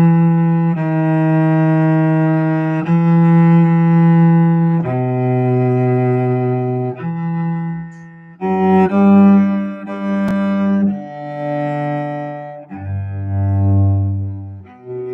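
Solo cello played with the bow: a slow melody of long held notes, each about two seconds, with a brief break about eight seconds in and a low note near the end. This is the plain theme that comes before the first division of a 17th-century set of divisions.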